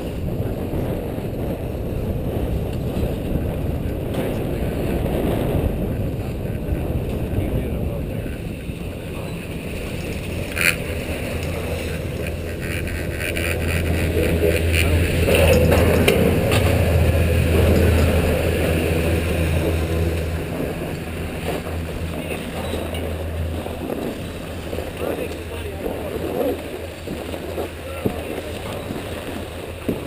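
Wind buffeting the microphone on a moving chairlift. About eleven seconds in, a steady low hum from the lift terminal's machinery comes in with a sharp click. The hum is loudest as the chair passes through the terminal, then fades as the rider unloads onto the snow.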